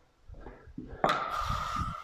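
A steel curved drywall trowel scraping over wet joint compound on a drywall seam, starting about a second in as a steady rasping scrape with a thin, steady whine in it. Before it come a few soft knocks of tool handling.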